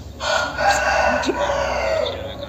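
One loud, long animal call lasting nearly two seconds, starting just after the start.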